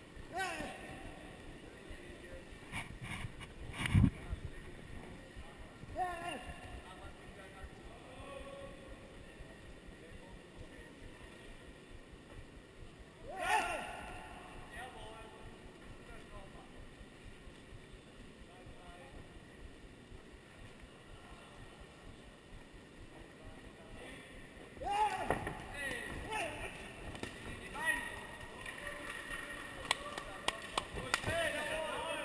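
Crowd and hall noise around a kickboxing ring, with occasional shouted voices and a single sharp thump about four seconds in.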